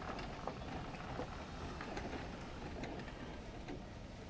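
Quiet room background with a low steady rumble and a few faint clicks and rustles.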